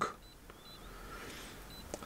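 Faint, short high-pitched key beeps, about three in all, from a Launch CRP123 OBD2 scanner as its buttons are pressed, with a light click of a button among them.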